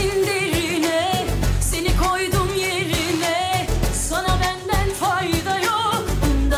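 A woman singing a Turkish pop song into a handheld microphone, with a wavering, ornamented vocal line, over a pop accompaniment with a regular bass beat.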